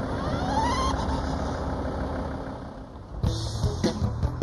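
Volkswagen van's engine idling while it stands stopped, with a brief rising whine about half a second in. Music starts about three seconds in.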